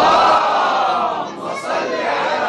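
A man's voice chanting verse into a microphone, drawn out in long melodic lines.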